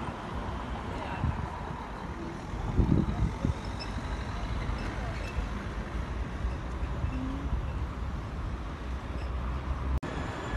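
Outdoor city street sound picked up by a phone microphone: a steady low rumble of traffic with faint voices of passers-by, and a few brief louder knocks about three seconds in.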